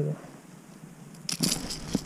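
Handling noise of a small hooked perch being unhooked by hand: quiet at first, then a rapid cluster of crackling clicks and rustles in the second half as the fish wriggles on the lure.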